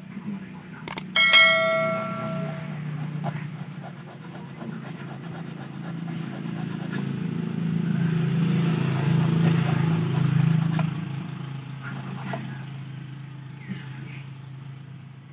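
Steel tool striking against stainless steel wire while a fishing hook is hand-shaped: a sharp clink about a second in that rings on briefly with a clear metallic tone. A low steady drone swells and fades in the background.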